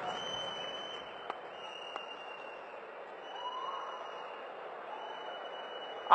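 Faint audience applause and crowd noise, holding steady after dying away, with a couple of small sharp clicks.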